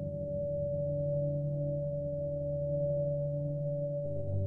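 Background ambient music: a held chord of steady drone tones, like a singing bowl, with no beat.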